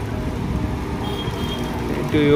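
Microwave oven running with its outer cover removed, a steady hum from the high-voltage transformer and cooling fan. The magnetron is powered and heating, drawing nearly 9 amps.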